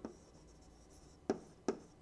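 Pen stylus writing on a tablet surface: a faint stretch of strokes, then two sharp taps of the pen tip near the end, less than half a second apart.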